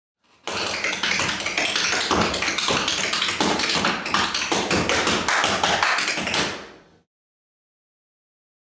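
Tap dancing: a fast, unbroken run of tap-shoe strikes, starting about half a second in and fading out about a second before the end.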